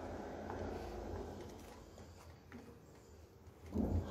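Faint room tone with a low steady hum, fading over the first few seconds, with a few faint soft ticks.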